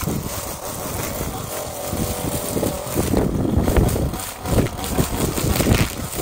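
Small gas engine of a handheld string trimmer running, with wind gusting on the microphone.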